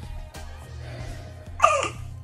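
Soft background music, with an infant giving one short, loud cry near the end that falls in pitch.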